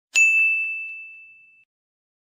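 A single high ding, the sound effect of a channel intro, ringing out and fading away over about a second and a half, with two faint repeats just after the strike.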